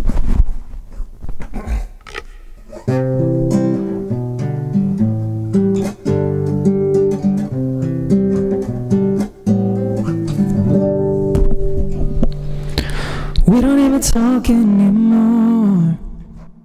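Nylon-string classical guitar being played: a couple of seconds of handling knocks, then picked chords that change about every half second. Near the end, a sung voice with vibrato comes in over the guitar.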